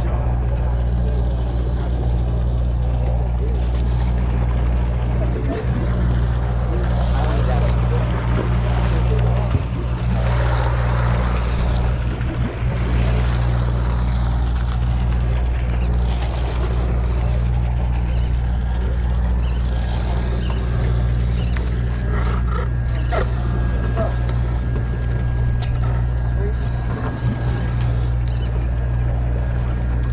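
A sportfishing boat's engine running with a steady low drone, with a hiss of wind and water over it.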